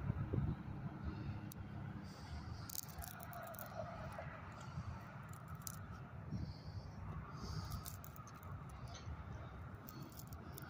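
Faint outdoor background: a low steady rumble with scattered light clicks and a few brief high chirps.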